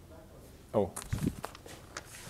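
A short vocal sound from a man about three-quarters of a second in, the loudest thing heard, followed by a few footsteps on a hard lecture-hall floor as he walks along the blackboard.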